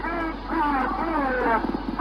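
Old, muffled radio recording of a woman's voice, wavering and gliding in pitch as she cries out in distress, over a steady low hum. It is the intercepted signal that is claimed to be a Soviet cosmonaut calling for help on re-entry.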